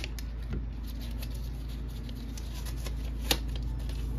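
A paper mail envelope being handled and opened by hand, a faint rustle with small scattered clicks over a steady low hum, and one sharp click about three seconds in.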